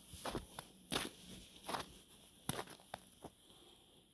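Footsteps of boots walking through deep fresh snow: about six steps at a walking pace, stopping a little after three seconds in.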